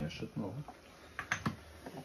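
Wooden spoon clicking and scraping against a pan while stirring a thick meat-and-tomato sauce, a few light clicks about a second in.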